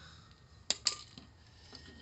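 Two quick, light clinks close together a little under a second in, with a fainter one just after: a hand knocking against the cut-open grille and hood latch parts of a car while reaching in to free the stuck latch.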